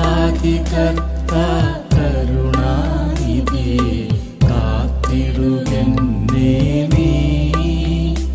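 Malayalam Christian devotional song: a voice singing a slow, ornamented melody over a steady low drone and a regular beat.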